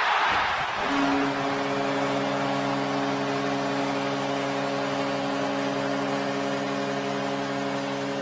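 Hockey arena goal horn signalling a goal: one long, steady multi-note blast that starts about a second in and is held, over a crowd cheering.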